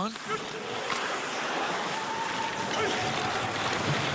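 Ice hockey arena ambience during play: a steady wash of crowd noise, with a few faint clicks of sticks and puck on the ice.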